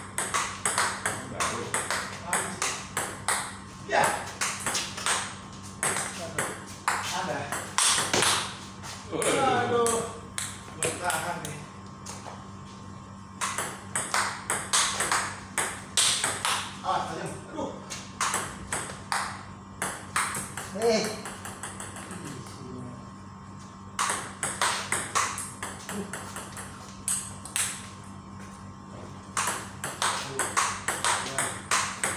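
Table tennis rally: the ball clicking off the paddles and bouncing on the table in quick, regular ticks. Several rallies run one after another, with short breaks between them.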